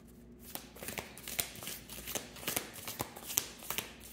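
A deck of large divination cards being hand-shuffled: quick papery snaps of cards slipping through the hands, starting about half a second in and repeating two or three times a second.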